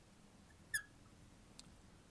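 A brief high squeak of a marker dragging on a glass lightboard while writing, about three-quarters of a second in, then a faint tick. Otherwise quiet room tone.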